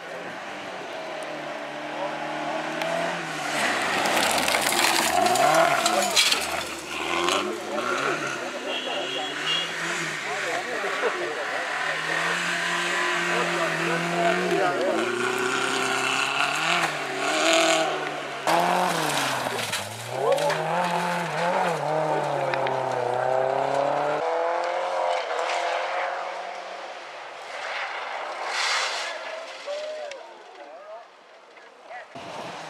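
Rally car engine at full throttle, its pitch repeatedly climbing and dropping as the driver shifts gears and lifts, with gravel and tyre noise and a few sharp knocks. The sound changes abruptly about three quarters of the way through and gets quieter near the end.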